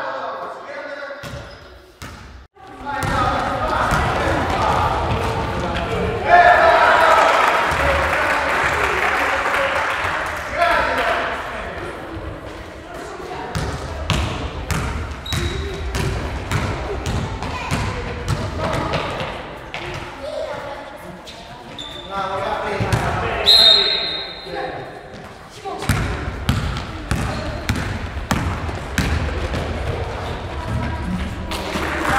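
Basketball bouncing on a gym floor in repeated knocks, with the chatter and shouts of players and spectators throughout, loudest a few seconds in and again near the last third.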